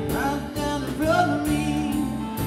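Live rock band playing: a sung vocal line over electric guitars, bass guitar and a drum kit keeping a steady beat.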